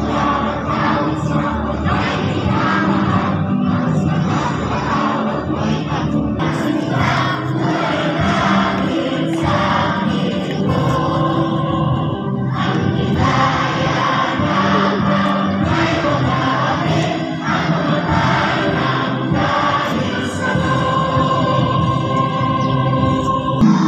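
Many voices singing together with musical accompaniment, held notes and a steady level throughout.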